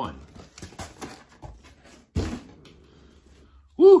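Handling noise of vinyl records and their cardboard shipping box: scattered clicks and rustles, then a single thump about two seconds in. Near the end a man whoops "Woo!", the loudest sound.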